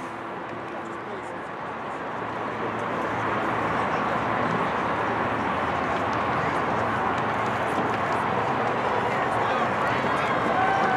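Crowd of many people talking at once in a stadium, a blended murmur of voices with no single speaker standing out. It grows louder over the first three or four seconds, then holds steady.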